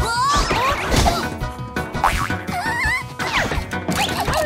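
Cartoon background music with slapstick sound effects: a loud whack about a second in and further knocks later, among wavering, sliding tones.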